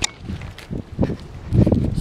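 Footsteps on a paved road, with wind and handling rumble on a handheld camera's microphone: irregular low thumps that grow louder and closer together in the second half.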